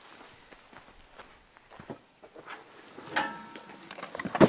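Soft footsteps on grass, with the rustle of a nylon backpack's fabric and straps as it is lifted and carried.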